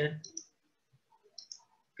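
Two pairs of light, sharp clicks about a second apart, from computer input (mouse button or key presses), over a quiet room, after the tail of a spoken word.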